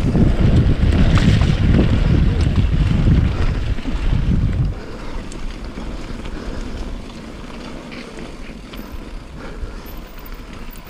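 Wind buffeting a mountain biker's action-camera microphone as the bike rolls along a dirt and rock trail, a loud low rumble over tyre noise. The rumble drops off sharply about halfway through, leaving quieter rolling noise with a few light ticks.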